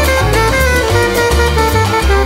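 Jazz music with a bass line moving from note to note, steady percussion and held melody notes above.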